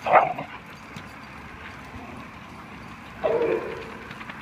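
A dog barking twice during excited play at a hose's water spray: a sharp bark right at the start and a longer one about three seconds in.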